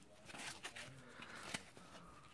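Faint handling sounds: hands picking up a white block of packing foam while holding the multi-tool, with soft rustling and a few light clicks.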